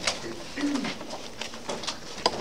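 Paper handling in a meeting room, with small clicks and rustles as pages are turned. About half a second in there is a brief low sound that falls in pitch.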